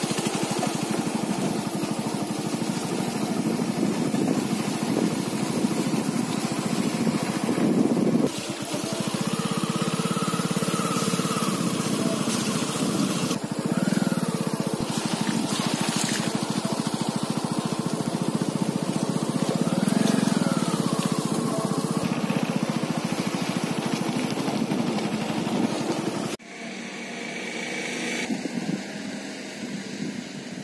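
Small motorcycle engine running steadily as the bike is ridden along a dirt track. Its pitch rises and falls briefly a couple of times, and the engine noise drops away sharply near the end.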